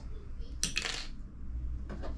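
Brief clinking rattle of fishing gear being handled about half a second in, followed by a single light tap near the end.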